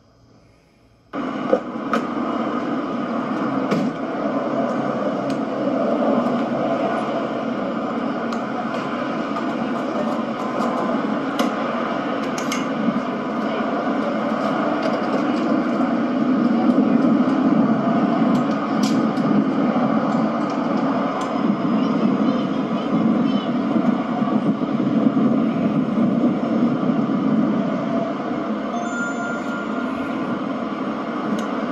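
Steady outdoor background noise, like traffic or wind on a camcorder microphone, with a few scattered clicks. It starts suddenly about a second in and is heard through a TV speaker.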